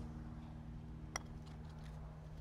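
A putter striking a golf ball once: a single light click about halfway through, over a faint steady hum.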